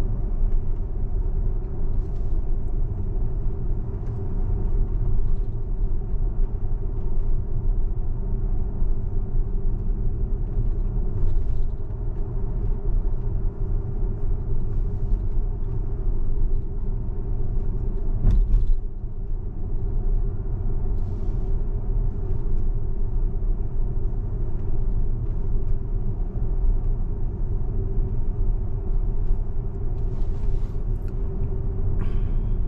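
Steady low road and tyre rumble heard inside the cabin of a Tesla electric car rolling slowly along a residential street, with no engine note. A single brief knock comes about two-thirds of the way through.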